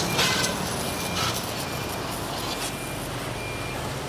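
Dekton DK-CWR2300FB 2300 W electric pressure washer running, its water jet hissing steadily as it sprays a motorcycle, with the pump motor humming low underneath.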